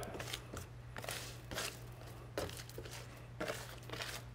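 Faint scraping strokes of a small plastic hand brush pushing granular spill absorbent through spilled fluid on a metal tabletop, several irregular strokes, over a low steady hum.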